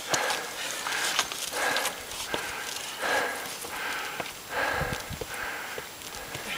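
A person breathing hard in quick, evenly spaced breaths from the exertion of climbing a steep slope, with footsteps and scuffs on rock. A few dull knocks come about five seconds in.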